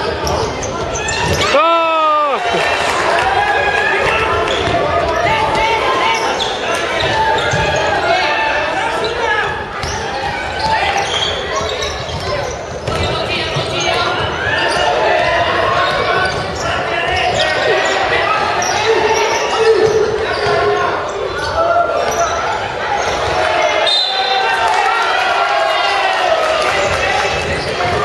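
Basketball game in a gymnasium: a ball dribbled on the hardwood floor under constant shouting and calls from players and spectators, echoing in the large hall. One long falling call stands out about two seconds in.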